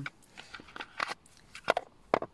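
Oracle cards being handled and rummaged through in their box: light rustling and small clicks, with one sharp click near the end.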